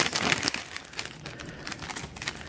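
Packaging wrap crinkling as hands unwrap a gift, a dense run of small crackles in the first half second, then softer, scattered rustles.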